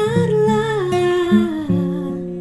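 A woman's voice humming a wordless melodic line that slides slowly down in pitch, over acoustic guitar chords plucked about twice a second.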